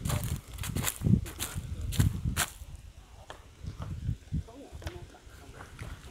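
Footsteps over dry leaves, twigs and loose soil: a string of sharp crackles and low thumps, louder in the first half and quieter after about three seconds.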